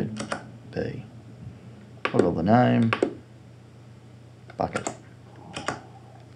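Short sharp clicks from a Strymon Timeline delay pedal's controls being worked while a preset is stored: a few clicks near the start, one a second in, and pairs of clicks in the last couple of seconds.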